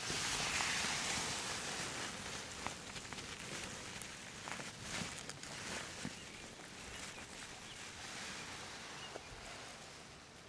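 A hand digs and scrapes in loose soil in a hole, with a soft rustle of dirt and grass roots, loudest in the first couple of seconds, and a few small knocks and crumbles.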